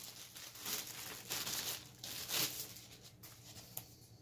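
Clear plastic packaging bag crinkling and rustling in irregular bursts as a keyboard is worked out of it, loudest about two seconds in.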